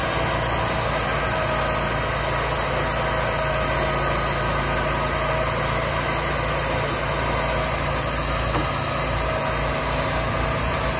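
Engine of a Wood-Mizer portable bandsaw mill running steadily.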